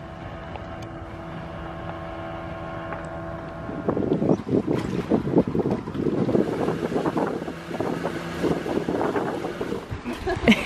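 A pontoon boat's motor runs steadily under way. From about four seconds in, wind buffets the microphone loudly over the motor's hum.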